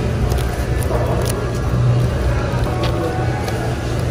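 Steady low background hum, with a few light crinkles and clicks of plastic produce wrapping as packs of peppers are handled.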